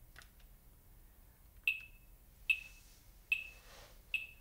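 Handheld electronic metronome beeping at 73 beats per minute. A few faint clicks come first, then about halfway in three short, high beeps start, evenly spaced, each with a brief ringing tail.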